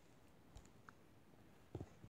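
Near silence with a few faint clicks from fingers tapping and handling the tablet, two close together near the end.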